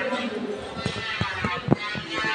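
Background voices talking, with four short, dull thumps in the second half.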